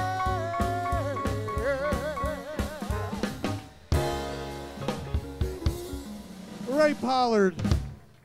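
A live band ends a song: rapid drum-kit hits under a long held vocal note with wide vibrato, then a final crash about four seconds in that rings out. Near the end a man's voice calls out loudly.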